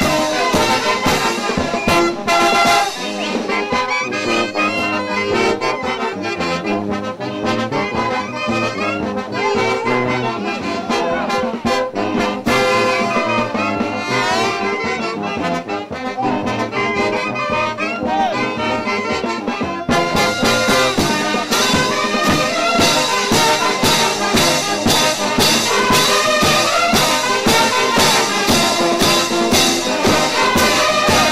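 A large brass band of trombones, trumpets, saxophones and sousaphones playing, with a bass drum and hand cymbals. The drum and cymbal beat thins out for much of the first part and comes back strongly and evenly about twenty seconds in.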